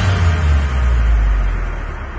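A deep, low rumble that starts right after a quick falling tone and fades away over about two seconds.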